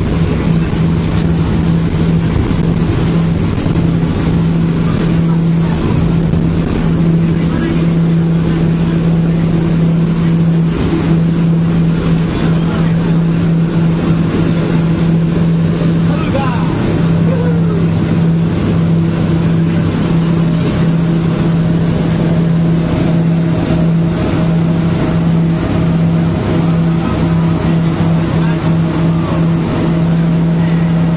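Engine running at a steady, constant speed: a loud, unbroken drone that holds one pitch, with the rush of motion noise beneath it.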